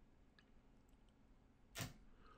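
Near silence: room tone, with one short burst of noise near the end.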